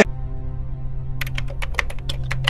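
Computer keyboard typing sound effect, quick irregular key clicks starting about a second in, over a steady low musical drone.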